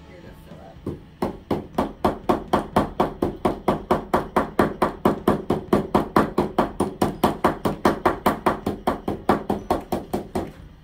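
A paint-covered stretched canvas knocked rapidly and evenly against a wooden desk, about five sharp knocks a second, starting about a second in. This is the noisy part of pour painting, where the canvas is knocked to spread and move the wet poured paint.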